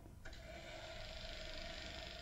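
Film projector switched on: a click about a quarter second in, then a faint steady whir and hiss with a low hum as it runs.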